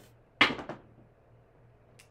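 A pair of dice thrown onto a craps table: one sharp hit about half a second in, then a few quick rattles as they bounce off the table's studded back wall and settle.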